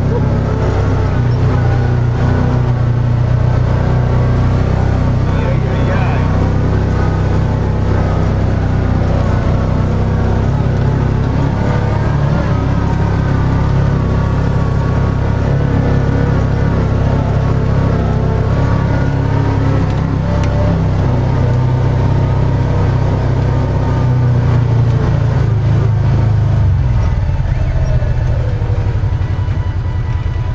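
UTV engine running steadily under load while the vehicle drives over slickrock. It settles to a lower, even idle about three seconds before the end. Music with a singing voice plays over it.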